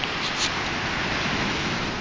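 Steady rushing wash of ocean surf breaking on a sandy beach.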